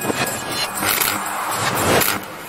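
Whoosh transition effects of an animated outro: about three swelling rushes of noise, the last and loudest near the end.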